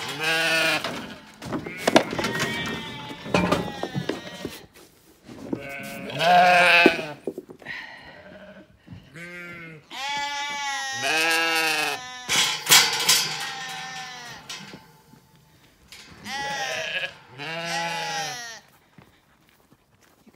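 Zwartbles sheep bleating over and over, about ten long calls with short gaps between them. These are lambs calling for their freshly shorn ewe, which they do not recognise by look or smell.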